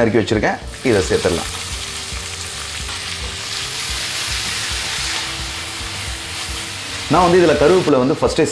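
Chopped onions sizzling as they fry in hot oil in a pan, stirred with a spatula: a steady hiss for several seconds.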